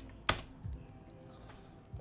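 Computer keyboard: one sharp key press about a third of a second in, followed by a couple of faint taps.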